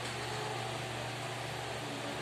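Steady room tone in a church hall: a constant low hum with an even hiss, from the running electric fans and the sound system.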